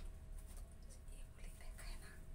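Faint whispered voices over the low, steady rumble of a lift car travelling up between floors.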